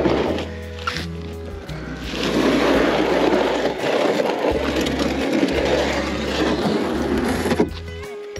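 Plastic Perception kayak hull scraping as it is dragged by its end handle over sand and gravel. The scraping starts about two seconds in and stops suddenly near the end, over background music.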